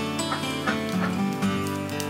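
Background instrumental music with a melody of held and plucked notes.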